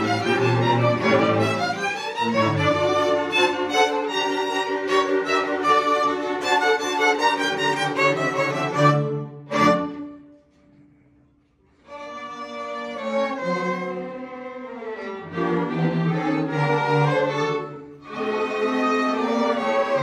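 A string orchestra of violins and cellos playing. About nine and a half seconds in it hits a sharp accented chord, falls silent for about two seconds, then starts playing again.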